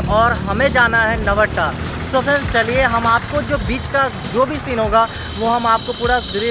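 A man talking, over street traffic with motorcycles passing.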